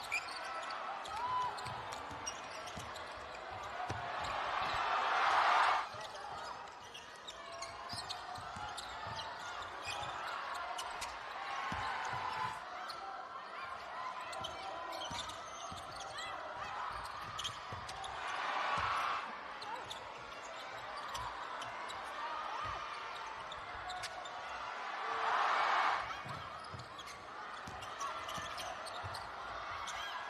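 Basketball game sound in an arena: a ball dribbling and knocking on the hardwood court throughout, under a constant murmur of the crowd. The crowd noise swells up three times, a few seconds in, past halfway and near the end.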